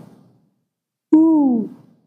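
A man's voice letting out one drawn-out moaning "oh" with a falling pitch, about a second in, imitating sounds of sexual pleasure. The fading end of a previous "oh" is heard at the start.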